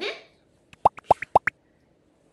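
A cartoon-style sound effect: a quick run of about five short rising 'bloop' plops in under a second.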